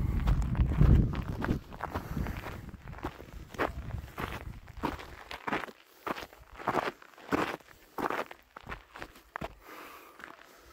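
Footsteps of a hiker walking at a steady pace on a stony dirt trail, each step a short crunch. A low rumble over the first second or so is the loudest thing.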